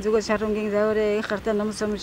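A single voice reciting a Buddhist prayer text as a rapid monotone chant. It stays on one steady pitch while the syllables change quickly.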